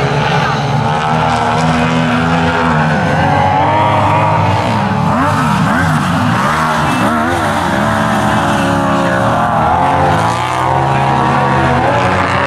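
Two racing sidecar outfits' engines running hard, revving up and down through the bends. Two engine notes cross each other in the middle, as one rises while the other falls.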